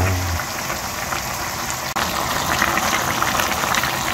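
Chicken, potato and carrot braise simmering in a frying pan on a gas burner: a steady bubbling sizzle with fine crackles.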